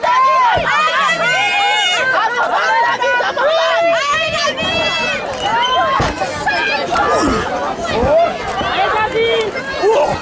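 Wrestling crowd of spectators, many high-pitched voices shouting and cheering over each other, with a few dull thuds from the ring about half a second in and again around six and eight seconds.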